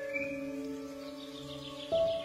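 Slow, soft instrumental music of long held notes, with a new note coming in near the end, over songbirds: chirps at the start and a rapid high trill through the second half.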